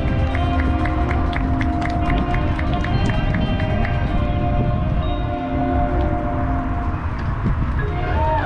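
Marching band playing on the field: held chords, with a quick run of short repeated high notes, about three a second, through the first half.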